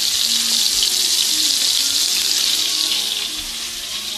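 Rib-eye steaks frying in butter in a pan, a steady, loud sizzle.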